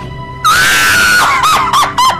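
A woman screams in distress: a sudden long, high scream starting about half a second in, then breaking into wavering cries. Background music plays underneath.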